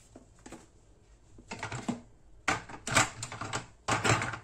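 Handling noise: a run of sharp clicks and knocks of hard plastic, faint at first and busier and louder in the second half, as a capsule coffee machine's plastic pod adapter and a paper coffee pad are handled.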